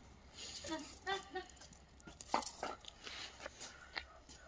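Dogs giving a few short, high-pitched whines and yips, a cluster about a second in and a couple of sharper ones a little after two seconds, quiet overall.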